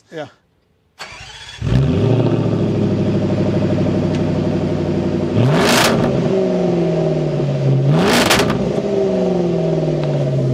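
Land Rover Defender 110's 5.0-litre supercharged V8 starting: a brief crank about a second in, then it catches and settles into a steady idle. The throttle is blipped twice, about two and a half seconds apart; each rev rises sharply and falls back to idle.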